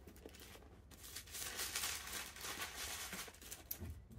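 Tissue paper rustling as it is unfolded and pulled back inside a cardboard gift box, starting about a second in.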